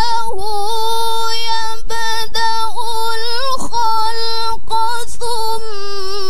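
A young woman reciting the Qur'an in the melodic tilawah style into a microphone. She holds a long line mostly on one steady pitch, with small ornamental turns and brief breaks between syllables.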